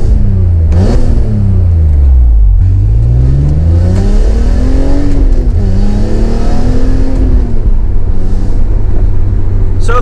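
BMW E46 M3's S54 inline-six, fitted with catless headers and an aftermarket muffler, heard from inside the cabin while driving. The revs climb and fall twice, then hold steady over the last few seconds.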